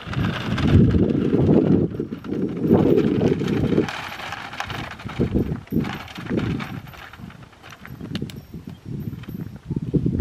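Hoofbeats of a Morgan horse walking on dry packed dirt, mixed with the rattle of a plastic shopping cart's wheels as it is dragged behind on a rope. The sound is dense for the first few seconds, then breaks into separate thuds that grow quieter.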